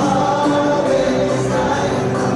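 Live rock band playing through a concert PA, electric guitars sounding with sustained sung vocals over them.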